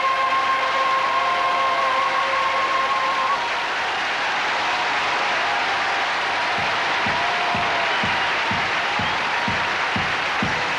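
Audience applauding as a held sung note ends about three seconds in. Past the middle, a low, regular beat of about two a second starts under the applause.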